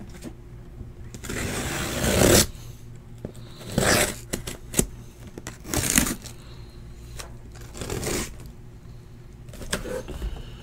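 Cardboard shipping case being opened by hand: bursts of cardboard scraping and rubbing as the flaps and tape are worked open. The longest burst comes about one to two and a half seconds in, with shorter ones near four, six and eight seconds and a couple of sharp clicks.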